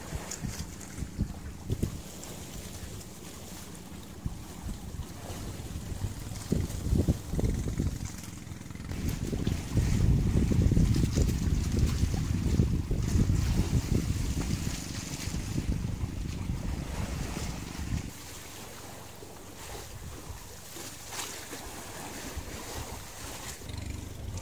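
Wind buffeting the microphone at sea, a low rumbling noise over a faint steady low hum. It swells louder for several seconds in the middle, then drops back.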